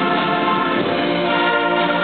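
School concert band playing held chords, woodwinds and brass sounding together.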